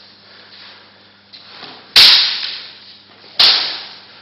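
Two sharp, loud cracks about a second and a half apart, each dying away over about half a second.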